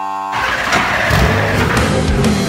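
A racing car engine fires up and revs, its pitch sweeping up and down, breaking in about a third of a second in as a held musical tone cuts off.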